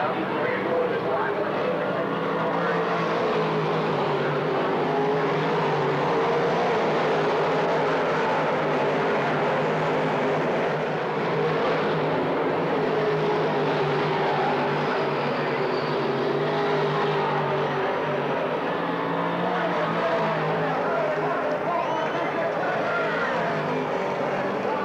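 Dirt modified race cars running laps on a dirt oval: a loud, continuous din of several race engines that holds steady without breaks.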